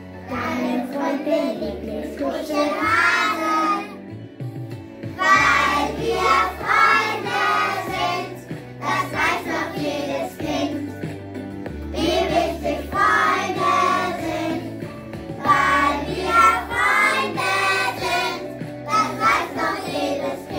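Children singing a song together to instrumental accompaniment with a bass line that steps from note to note. The singing comes in phrases with short pauses between them.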